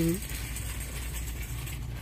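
Paperback books rubbing and sliding against each other as one is pulled out of a packed store display, over a steady low hum of shop background noise.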